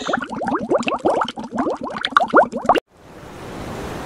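Bubbling water: a quick, dense string of plops, each rising in pitch, that cuts off suddenly about three seconds in. A hiss of surf then swells up in its place.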